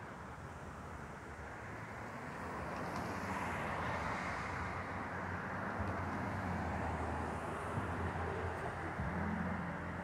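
Road traffic on a street: a steady rushing with a low rumble, growing louder about three seconds in and then holding.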